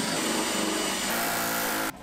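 Drill spinning a spot weld cutter into the sheet-metal kick panel of a 1976 Chevy K10 cab to drill out its spot welds. It runs steadily, then stops abruptly just before the end.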